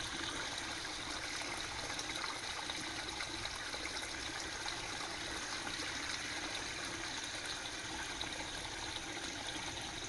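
A small stream running steadily: an even, unbroken wash of flowing water.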